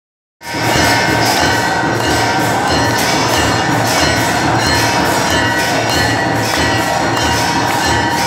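Temple bells ringing continuously, loud and dense, with a steady rhythmic beat underneath.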